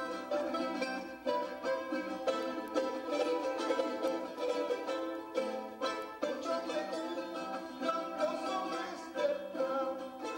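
Charango strummed fast, a dense run of bright plucked-string chords and melody notes.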